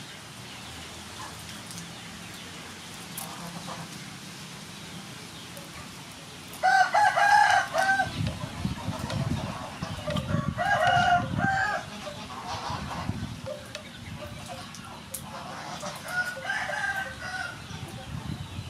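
A rooster crowing: two loud crows about seven and ten seconds in, and a fainter crow near the end.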